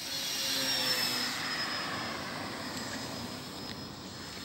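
Electric motor and propeller of a radio-controlled trainer airplane (a 2830-size, 1000 KV brushless motor) passing close by: a whine that drops slightly in pitch, loudest about a second in, then slowly fading as the plane moves away.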